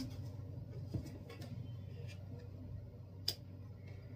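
Quiet handling of tarot cards, with a soft thump about a second in, a few faint ticks, and one sharp click past three seconds as cards are moved and set down on the spread. A faint steady low hum sits underneath.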